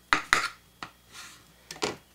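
Small knife clicking and scraping against a cutting board while a strip of lime peel is carved: two sharp clicks near the start, one near the middle and two more near the end.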